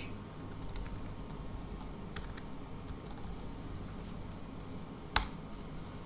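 Typing on a computer keyboard: scattered faint key clicks, with one louder click about five seconds in.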